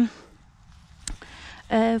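A woman's speech: a drawn-out hesitation sound trails off, then comes a pause with faint hiss and one short click about a second in, and her talking starts again near the end.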